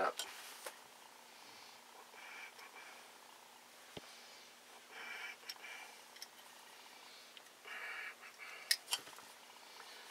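Faint handling of a small carburetor body and hand tools on a table: soft rubbing and shuffling, with a sharp click about four seconds in and a couple of small clicks after eight seconds.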